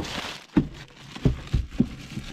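A plastic bag rustling as a bagged power bank is handled, then a few dull knocks as it is wedged into a hard plastic storage well.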